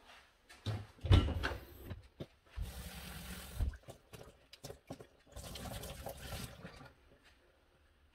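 Water running from a kitchen tap in two spells of about a second each, with knocks from handling things on the counter before them.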